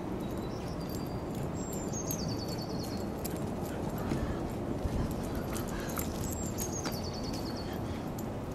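A small songbird sings the same short phrase twice, a high series of quick notes stepping downward over about a second and a half, over a steady outdoor background noise with faint scattered clicks.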